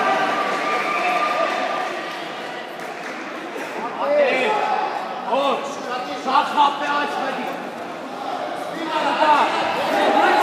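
Voices calling out and talking, echoing in a large sports hall, growing louder about four seconds in and again near the end.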